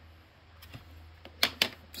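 Hard plastic action-figure carbonite block being handled and set down on a wooden table: a few sharp clicks and knocks about one and a half seconds in, over a faint low hum.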